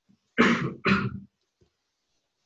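A person gives two quick, loud coughs, clearing the throat.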